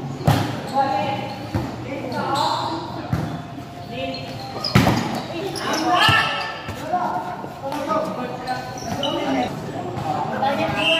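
Volleyball rally: a serve and several sharp hand-on-ball hits, the loudest about halfway through, with players and spectators calling out throughout.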